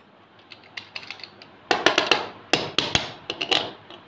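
A steel padlock handled and set down on a concrete floor: a few light metallic clicks, then three groups of sharper clacks and knocks in the second half.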